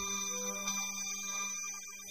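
Quiet tail end of a song: the heavy bass cuts out at the start, and a few sustained musical tones linger and fade down.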